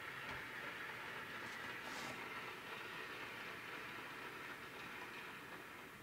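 Faint, steady applause from a large seated audience.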